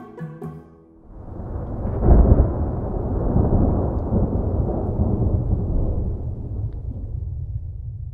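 A thunder rumble sound effect swells in about a second in, peaks sharply soon after, then rolls on and slowly fades. The last notes of light background music end just before it.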